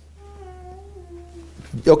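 A faint, high-pitched voice holding one drawn-out note for over a second, sinking slightly in pitch near the end, over a steady low hum.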